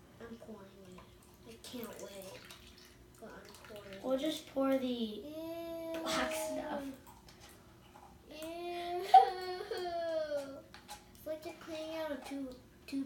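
A child's voice making two long, wavering drawn-out vocal sounds, not words, the first about four seconds in and the second about eight and a half seconds in.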